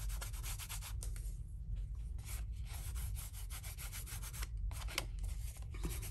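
Fingertips rubbing and burnishing gold leafing flakes onto tear-and-tape adhesive strips on a cardstock card, pressing the leaf down: quick, repeated rubbing strokes.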